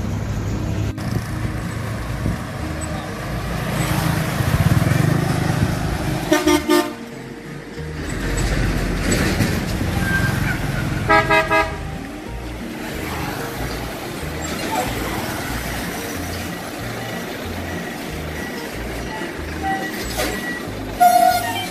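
Truck engines and passing road traffic, with vehicle horns honking: a pulsing honk about six seconds in and a quick run of short toots about eleven seconds in.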